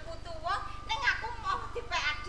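Speech: voices talking back and forth over a steady low hum.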